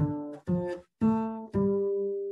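Double bass played pizzicato: a walking jazz bass line arpeggiating up by thirds over a ii–V–I, with four plucked notes about half a second apart, the last one held and left ringing.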